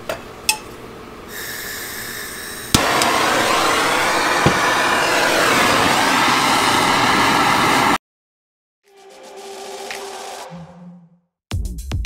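Hand-held gas torch lit with a sharp click, then burning with a loud steady hiss that cuts off suddenly. Background music comes in near the end.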